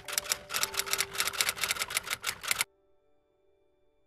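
Typewriter keystroke sound effect: a rapid run of clicks, roughly eight a second, lasting about two and a half seconds and stopping suddenly, as the closing text is typed out on screen.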